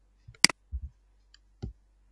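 Computer mouse clicks: one sharp, loud click about half a second in, followed by a few softer, dull knocks.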